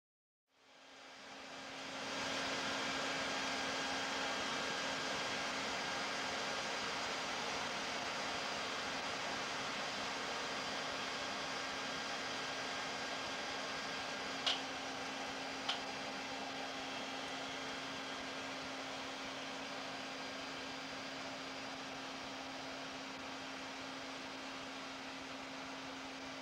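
A steady fan-like hum and hiss with one low steady tone. It fades in over the first two seconds and slowly grows quieter. Two short high pings come about a second apart near the middle.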